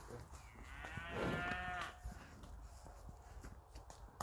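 A young cow in a following herd moos once, a single call about a second and a half long, starting about half a second in.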